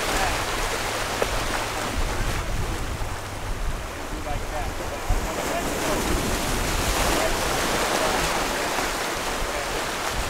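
Ocean surf washing over lava rocks, a steady rush with wind buffeting the microphone.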